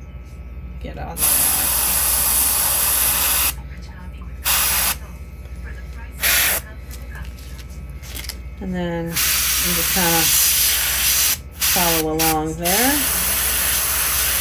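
Gravity-feed airbrush spraying paint in sharp on-off bursts of hiss: one of about two seconds, two short puffs, then two longer bursts near the end.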